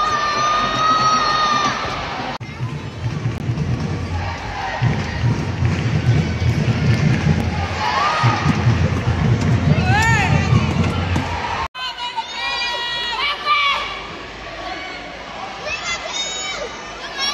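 Football stadium crowd: a steady crowd noise with high-pitched shouts and calls rising and falling over it. The sound breaks off abruptly twice.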